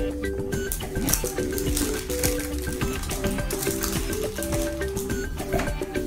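Background music: a light tune of short, evenly paced notes, with scattered clicks over it.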